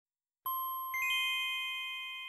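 Bell-like chime tones: one struck about half a second in, then three higher ones in quick succession about a second in, all ringing on and slowly fading.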